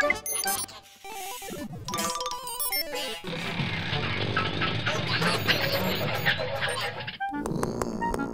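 Cartoon music and sound effects: short jingle notes and chirps, then from about three seconds in a dense, noisy sound effect with music under it that runs for about four seconds and stops abruptly.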